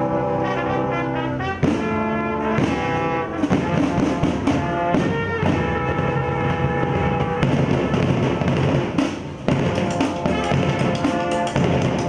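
Street brass band playing live, with trumpets, euphonium, tuba and saxophones over large marching drums. The horns hold long chords at first; from about three seconds in the music turns busier, with a steady drum beat under it.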